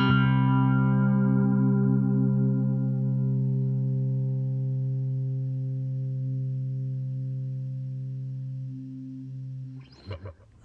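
Electric guitar's closing chord of a song, struck once and left to ring, fading slowly over about ten seconds until it dies away just before the end.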